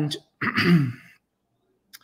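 A man clears his throat, a short two-part voiced 'ahem' falling in pitch, in the first second; a brief click follows near the end.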